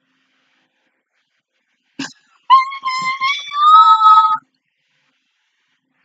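A single click, then a high-pitched vocal squeal held on one note for about two seconds, stepping up in pitch partway through, as from someone overcome with emotion with hands over her mouth.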